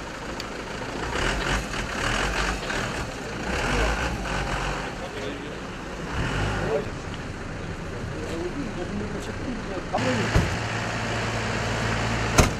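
Vehicle engine idling amid street noise, with indistinct voices in the background. A sharp knock comes about ten seconds in, followed by a steady low hum.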